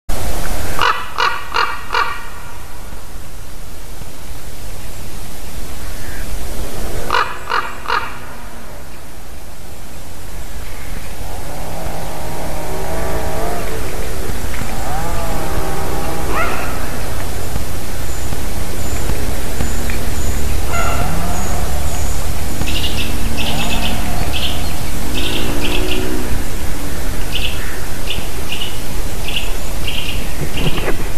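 Common ravens calling: a short run of quick rattling notes about a second in and another at about seven seconds, then a string of lower calls that bend up and down in pitch through the middle. From about two-thirds of the way on, a small bird chirps in quick repeated notes, all over a steady low rumble.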